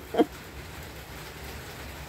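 Steady rain falling, an even soft hiss with a low rumble underneath.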